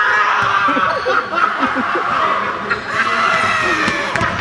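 Several people laughing and hollering in a gym, over sustained high-pitched tones that come and go about once a second.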